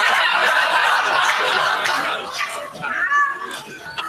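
Audience laughing together, a dense wash of laughter that dies down through the second half.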